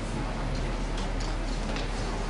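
Scattered light clicks, a few a second at irregular intervals, from a laptop being worked to set up a presentation, over a steady room hiss and a low mains hum.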